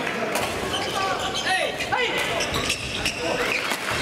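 Echoing sports-hall ambience during badminton play on several courts: shoe squeaks on the wooden floor, racket hits and background voices.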